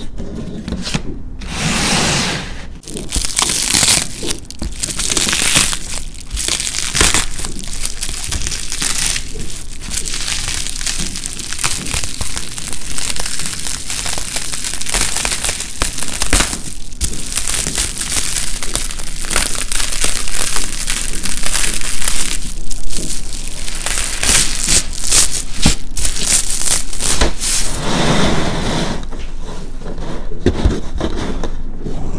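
Close crinkling and crackling as sheets of dried paint skin and bubble wrap are handled and peeled apart, running on with a few short breaks.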